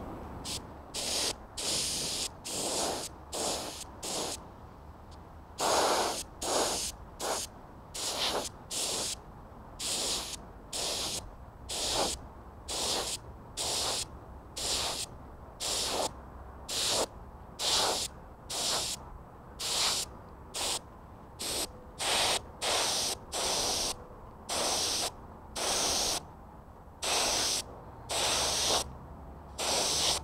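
Compressed-air spray gun with a gravity-feed cup spraying automotive primer in short trigger pulls: a hiss of air and paint in bursts of under a second, about one a second, with brief pauses between.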